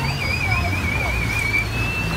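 Boat engine droning low under wind and water noise, with a thin, high warbling tone over the first second and a half.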